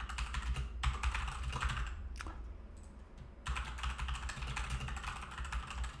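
Rapid typing on a computer keyboard, in two bursts with a pause of about a second and a half in the middle.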